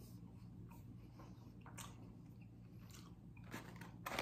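Faint chewing of a sauced chicken nugget: a few soft mouth clicks over near silence.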